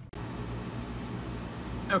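Steady fan-type hum and hiss of machinery running in the room, starting just after a sudden cut in the recording; a man's voice begins right at the end.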